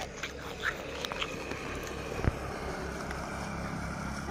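Quiet outdoor background with a steady low rumble, a few faint ticks, and one sharp crack about two seconds in.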